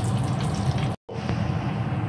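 Batter-coated chicken pieces deep-frying in hot oil in a pan: a steady, dense bubbling sizzle that cuts out for a split second about halfway through.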